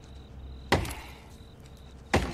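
A blade chopping once into a tree trunk about a second in: a sharp, hard strike with a brief tail.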